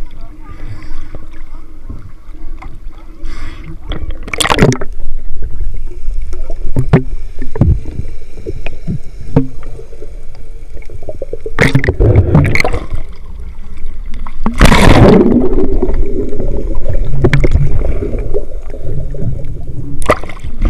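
Water sloshing and gurgling against a waterproof camera as it dips in and out of the sea, with irregular splashes and a low underwater rumble; a long, loud rush of water comes about 15 seconds in.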